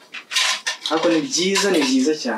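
Jars and dishes clattering and knocking against each other as things are moved about in a kitchen wall cupboard, with a voice in the second half.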